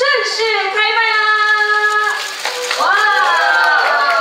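A high voice calling out in drawn-out notes: one note held steady for about two seconds, then, after a short break, a second call that rises and falls, as the noodle ribbon is cut.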